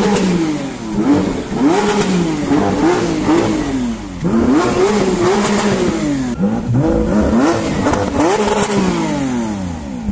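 Lamborghini Aventador's V12 engine being revved while standing still: about eight quick blips of the throttle, each rising and falling in pitch, with a short break about four seconds in.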